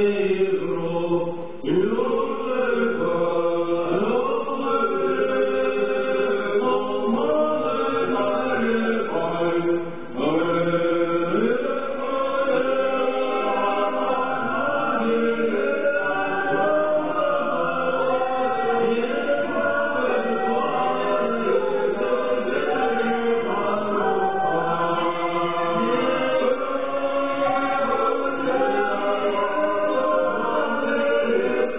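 Choral singing: several voices in a slow chant-like song, with long held notes and repeated upward sliding pitches in the first half.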